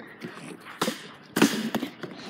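Plastic water bottle landing on a metal mesh table and falling over after a missed bottle flip: a sharp knock just under a second in, a louder one about a second and a half in, then a lighter tap.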